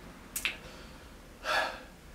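A man's short sharp breath about a second and a half in, after a small mouth click about half a second in, between sentences.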